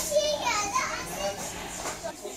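A young child's high-pitched voice babbling briefly, after a short click at the start.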